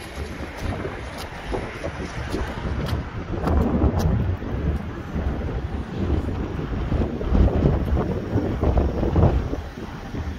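Wind buffeting the microphone in uneven gusts, a low rumbling noise that swells and fades.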